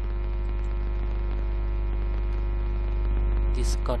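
Steady electrical mains hum on the recording: a constant low buzz with a stack of overtones that does not change. A man's voice begins just before the end.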